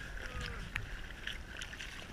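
Small waves lapping and sloshing against a camera held at the waterline beside a boat hull, with a few faint clicks.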